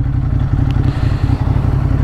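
Ducati Monster 821's L-twin engine running steadily at low revs as the motorcycle rolls slowly in traffic.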